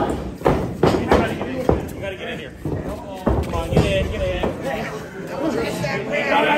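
Several sharp thuds and smacks, about four, from wrestlers grappling and striking in a ring corner, with voices calling out between them.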